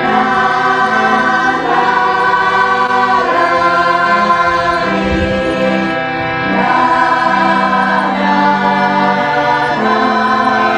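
Devotional kirtan chant: a group of voices singing long, held notes together over the sustained chords of a harmonium, the melody shifting every second or two.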